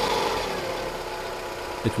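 Daewoo E-TEC II 16-valve four-cylinder engine running just after starting, its level easing off as it settles to idle. It idles smoothly without misfiring now that the MAP sensor has been cleaned and its damaged, leaking hose replaced.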